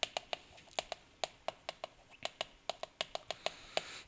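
Chalk writing on a chalkboard: a quick, irregular run of sharp taps and clicks as the chalk strikes the board stroke by stroke.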